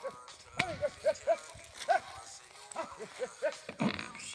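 A ploughman's short, repeated vocal calls driving a team of plough cattle, several a second. There are two sharp knocks, one early and one near the end.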